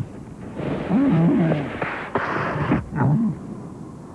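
Animated polar bears' voiced grunts: several short calls that bend up and down in pitch, over a noisy rushing sound as a bear slides through the snow.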